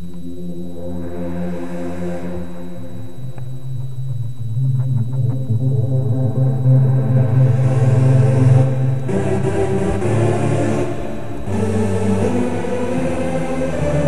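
Nexus software synthesizer playing a saw trance lead (Trancesaw Wide preset) in sustained chords, its filter cutoff swept by the mod wheel so the tone grows brighter and duller. The chord changes about nine seconds in and again near eleven and a half.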